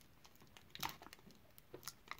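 Faint crinkling and a few soft clicks from a chocolate bar wrapper being picked at and peeled open with the fingertips.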